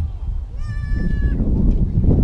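A short, high call at a steady pitch, lasting under a second, heard over a steady low rumble of wind on the microphone.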